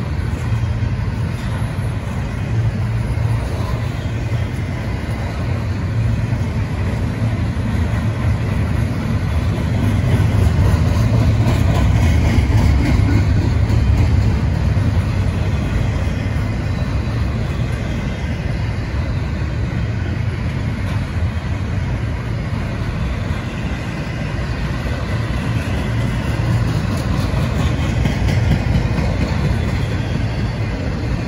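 Double-stack container well cars of a freight train rolling past: a steady, loud rumble of steel wheels on rail that swells a little about ten to fifteen seconds in.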